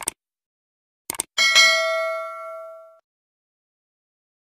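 Subscribe-button sound effects: a short double click at the start, a few more clicks just after a second in, then a bell ding with several ringing tones that fades out over about a second and a half.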